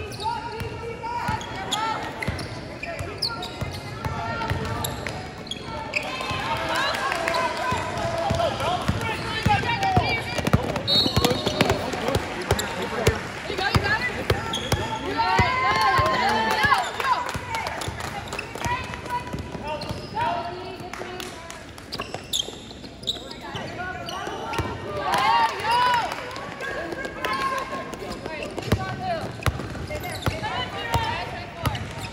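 A basketball being dribbled on an indoor court during a game, bouncing repeatedly, with voices of players and spectators calling out over it in a large echoing hall.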